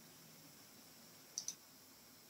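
Near silence: room tone, with two faint short clicks close together about a second and a half in.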